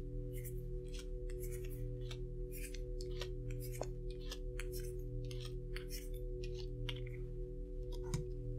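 Playing cards being dealt one at a time onto a table: quick soft snaps and slides, about two a second, over a steady low drone.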